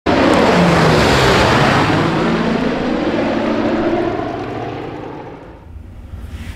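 Propeller-driven aircraft engines, loud from the first instant and then fading away over about five seconds, like a plane passing by.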